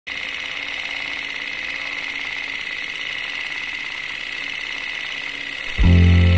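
Steady whirring rattle of a film projector running, used as a sound effect, with a faint steady hum under it. Near the end, loud deep music notes begin.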